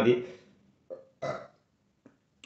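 A man's short burp, in two quick sounds about a second in.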